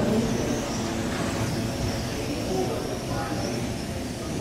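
1/12-scale electric RC pan cars with 13.5-turn brushless motors racing on a carpet track, their motors giving a steady high whine that wavers as they accelerate and brake, over a background of voices.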